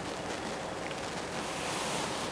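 Steady background hiss of room tone and recording noise, with no distinct sound events.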